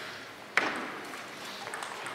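Table tennis rally: ball struck by rackets and bouncing on the table, with one sharp click about half a second in and fainter ticks after it.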